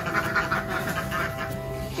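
A small flock of domestic ducks quacking in a quick run of short calls that tails off after about a second.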